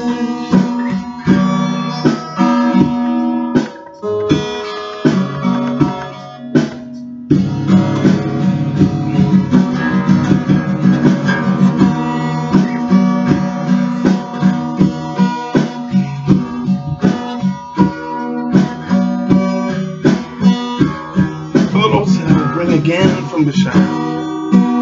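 Guitar strummed as an instrumental break between sung verses. The chords run in a steady rhythm, thin out and drop in level a few seconds in, then fill out again. A man's singing voice comes back in at the very end.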